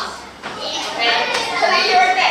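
Young children talking and chattering.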